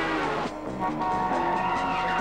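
Car tyres squealing, with music playing underneath.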